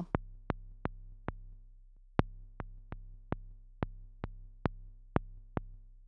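Reaktor Blocks modular synth patch (West Coast DWG oscillator through a low-pass gate) playing short percussive plucks, about two a second with a brief gap, over a low steady drone: just a little drum sound. The output is taken from the modulator oscillator instead of the carrier, so only the mod is heard.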